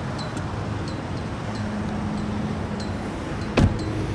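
A 2015 Buick LaCrosse's 3.6-litre V6 idling steadily after a remote start, with a single thud of a car door shutting about three and a half seconds in.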